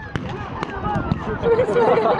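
Scattered blank rifle shots, a few sharp cracks, over people's voices shouting and talking.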